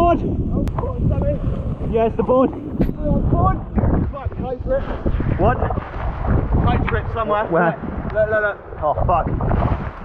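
Indistinct crew voices, on and off, over steady wind buffeting the microphone aboard a sailing catamaran under way.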